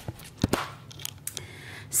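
Handling noise: a few sharp clicks and light rustles as the camera is moved and items are handled, the loudest click about half a second in.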